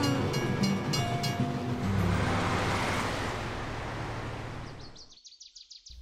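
Cartoon soundtrack under a scene change. It starts as soft music with light, even ticking over a low hum, then becomes a rushing swell that fades out. It is nearly silent about five seconds in.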